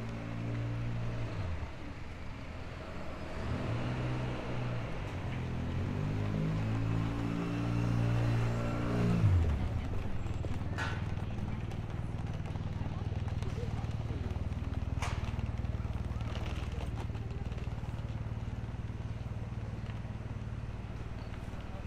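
Road vehicle engine on a city street, its pitch rising and then dropping sharply about nine seconds in, followed by a steady low traffic hum. Two short clicks come later.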